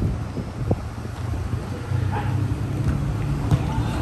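Outdoor ambience of a football pitch: a steady low rumble of road traffic and wind on the microphone, with a couple of sharp thuds of the ball being kicked and a faint shout about two seconds in.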